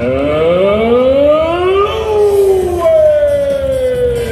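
A siren-like wail played through the arena PA, rising for about two seconds and then sliding slowly back down, with crowd noise underneath.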